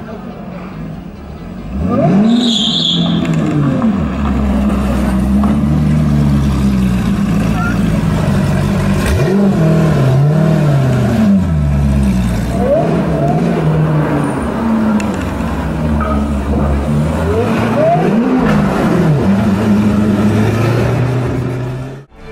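Hennessey Venom GT's twin-turbocharged V8 revving hard, loud from about two seconds in, its pitch sweeping up and falling back several times. The sound cuts off just before the end.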